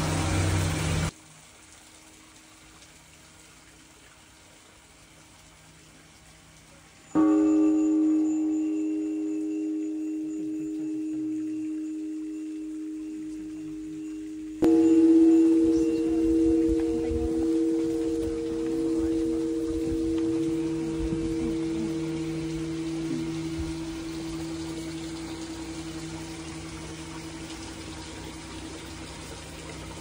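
A resonant metal bell struck twice, each strike ringing on with a long, slow fade; the first comes about seven seconds in, and the second, about halfway through, cuts in over the first and rings to the end.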